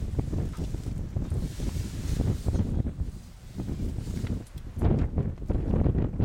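Wind buffeting the microphone in uneven gusts, a loud low rumble that dips briefly twice and is strongest near the end, with rustling of the bush an African elephant is feeding from.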